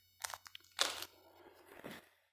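Faint crinkling of a folded strip of wide plastic tape with small button batteries sealed inside, handled between the fingers: a few short crinkles, the loudest just before a second in.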